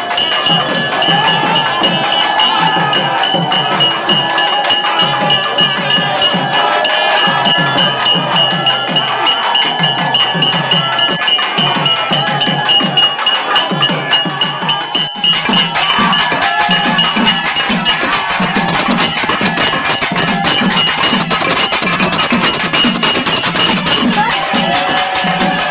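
A bell rings steadily and continuously over a fast drum beat and festival music. The bell's ringing weakens after a cut about fifteen seconds in, while the drumming goes on.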